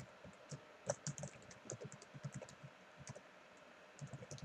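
Computer keyboard typing: a faint run of quick, irregular keystrokes, with a short pause a little after three seconds.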